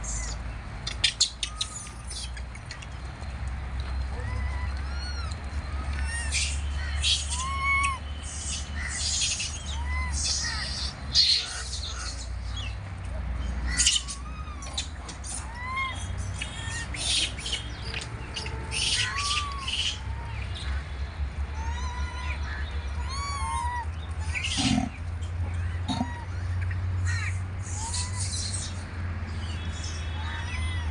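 Birds calling throughout: short rising-and-falling chirped notes repeat every second or two, mixed with harsher high-pitched calls, over a low steady rumble.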